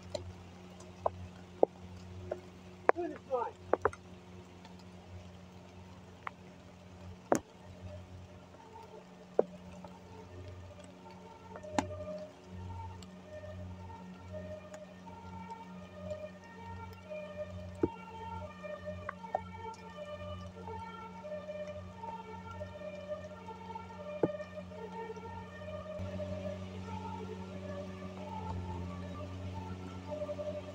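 A two-tone siren alternating between a lower and a higher pitch, starting about ten seconds in and growing louder toward the end, over a steady low hum. There are a few sharp clicks in the first seconds.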